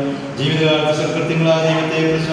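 A man's voice reciting prayers in a steady, chanted monotone, each phrase drawn out on nearly one pitch.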